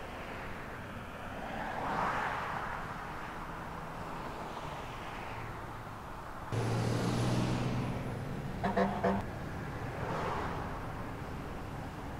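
Road traffic on a town street: cars passing one after another, each swelling and fading. About halfway through, a nearby engine's hum comes in suddenly, with a few short sharp sounds soon after.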